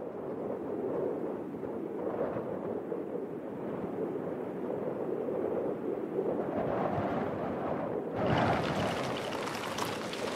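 A steady low rumble, like wind, for about eight seconds; then it changes suddenly to a harsher, crackling noise of a 4×4's tyres rolling over a loose gravel and stone track, with wind rushing past a side-mounted microphone.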